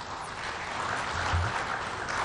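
Audience applauding, the clapping building up over the first second and then holding steady.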